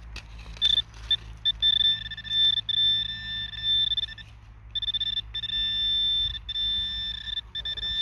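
Handheld metal-detecting pinpointer probed through loose soil, sounding a steady high-pitched tone broken by brief gaps, with a longer pause a little past four seconds in. The tone signals that it is close to a buried metal target.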